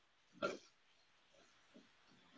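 Faint stirring of rice in a copper frying pan with a silicone spatula, with one brief, louder short sound about half a second in.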